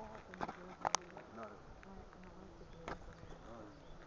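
A flying insect buzzing faintly with a low, steady hum, broken by a couple of sharp clicks about a second in and near three seconds.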